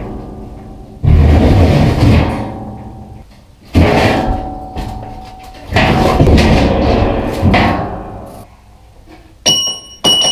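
A large steel plate being heaved and slid over a bolt on a concrete floor, scraping and rumbling in three heavy surges that each start suddenly and fade. Near the end, two sharp clangs set the plate ringing with a high metallic tone.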